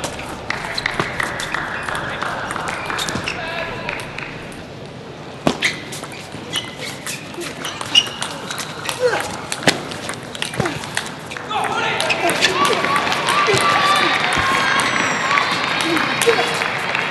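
A table tennis ball clicks off bats and table during a rally, a sharp hit every second or so. Underneath is a background murmur of indistinct voices, which gets louder after about twelve seconds.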